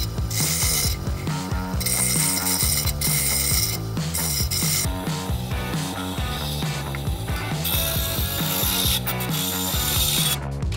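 Vertical metal-cutting bandsaw cutting aluminium angle in several short, rasping bursts, with hand deburring of the cut edge, over background music.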